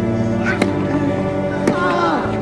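Background music with steady held notes, over a tennis rally: a racket strikes the ball twice, about a second apart, with a short falling grunt from a player around the second hit.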